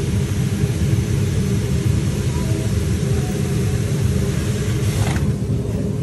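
Steady low rumble of commercial kitchen equipment around a flat-top griddle, where chopped chicken under melting cheese is steaming. About five seconds in there is a brief scrape as metal spatulas go under the chicken.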